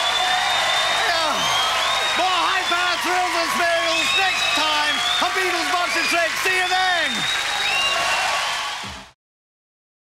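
Studio audience applauding, with many overlapping voices cheering and shouting over the clapping; the sound cuts off abruptly about nine seconds in.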